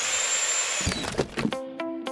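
Power-tool whir with a steady high whine for about a second, then cutting off. A few knocks follow, and a music sting of held chords begins about halfway through.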